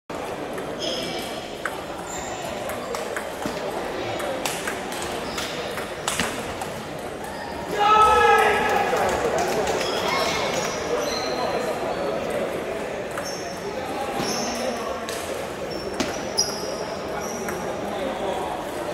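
Table tennis ball clicking off paddles and table during rallies, over the murmur of a crowd in a large, echoing hall. About eight seconds in comes a loud, falling shout.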